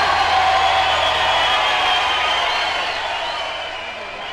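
A crowd cheering and whooping after a rock-and-roll number, fading out near the end.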